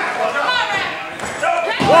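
Thuds of bodies and a hand slap on a wrestling ring mat as a referee's pin count begins near the end, with raised voices in the hall.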